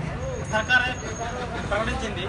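A man speaking in short phrases, with low traffic rumble in the background.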